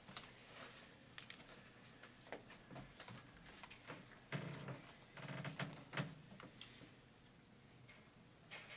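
Quiet room with papers being handled and shuffled on a table: scattered light rustles, clicks and taps, a few clustered in the middle.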